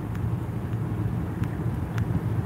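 Steady low vehicle rumble heard inside a car's cabin, with a few faint ticks.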